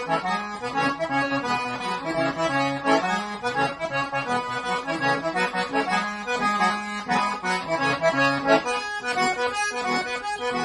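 Diatonic button accordion playing a zydeco tune solo, a bouncing pattern of alternating low bass notes under the melody.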